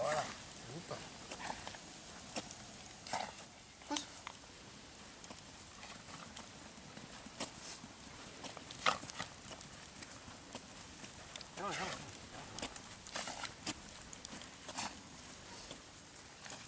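Steps of a person and a dog on frosty ground: irregular short crunching sounds, with a few brief voice-like sounds in between.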